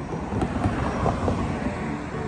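Road traffic at a street intersection: a vehicle passing, a noisy rush with a low rumble, and two light clicks about half a second in.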